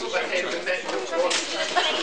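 Several people talking over one another, with one sudden sharp crack a little past the middle.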